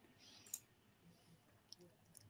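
Near silence: room tone, with a faint click about half a second in and another near the end.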